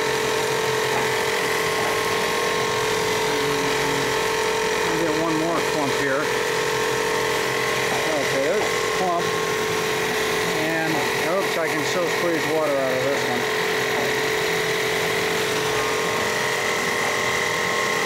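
Vincent CP-4 screw press running under load as it presses wet polymer. It gives a constant machine hum with a steady whine. Faint voices talk underneath around the middle.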